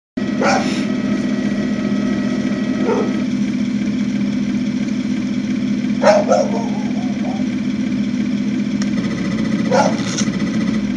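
Radio-controlled King Tiger tank model driving, with a steady low mechanical drone. A few short sharp sounds cut in about half a second in, around six seconds, and near the end.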